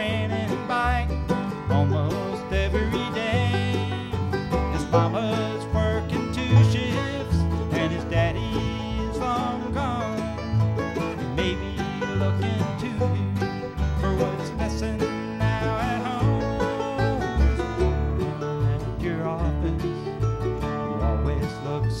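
Acoustic bluegrass band playing an instrumental break: banjo and guitar picking over an alternating bass line at a steady beat.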